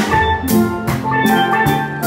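Steel drums playing a melody over a steady drum beat, about two beats a second.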